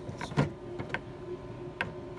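The cover of a Retsch PM200 planetary ball mill being shut and latched: a few sharp clicks and knocks, the loudest about half a second in and another near the end, over a faint steady hum.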